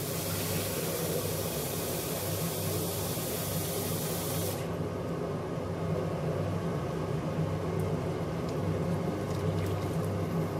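Hot water being poured into a simmering pot of lentils, a steady hissing pour that stops suddenly about four and a half seconds in, topping up the water the lentils will absorb. A steady low hum runs underneath.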